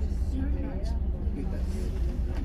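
Volvo B11RT coach's diesel engine idling with a steady low rumble while the coach stands still, heard from inside the cabin, with people talking indistinctly over it.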